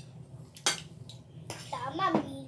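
Chopsticks clinking against a plate of noodles while eating, with one sharp clink about two-thirds of a second in and a lighter tap shortly after. A voice starts near the end.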